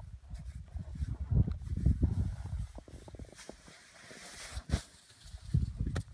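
Snow saw drawn through the snowpack along a buried layer of faceted snow in a propagation saw test: irregular scraping strokes for the first two and a half seconds, then quieter, with one sharp knock about three-quarters of the way through.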